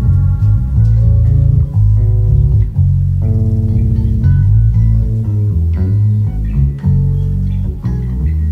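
Live band music with an electric bass guitar out front, playing busy runs of quickly changing low notes under held chords and light percussion.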